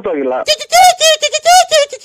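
A laughter sound effect inserted into a phone-call recording: a high-pitched, rapid 'ha-ha-ha' laugh that starts about half a second in and runs on in quick, even bursts.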